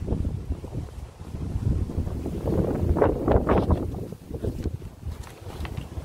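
Wind buffeting the microphone with a steady low rumble. Through the middle, short scratchy strokes of a pen drawing lines on a notepad.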